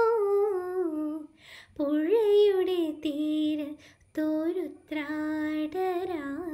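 A girl singing a Malayalam light-music song unaccompanied, a single voice holding long notes with small ornamental turns and slow downward glides, pausing twice briefly between phrases.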